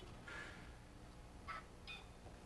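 Quiet room tone with a low steady hum and a few faint short sounds, about half a second in and again near the end.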